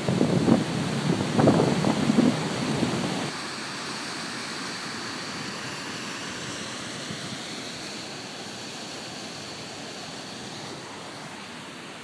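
Steady rushing of a waterfall, with wind buffeting the microphone for about the first three seconds.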